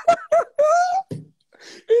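A man laughing hard in a high falsetto: a few short squeals, then one longer squeal rising in pitch, dying away a little past a second in.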